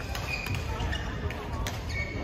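Badminton rally on an indoor court: sharp racket strikes on the shuttlecock, the clearest about one and a half seconds in, and short high squeaks of shoes on the court floor, over the echoing background chatter of a large sports hall.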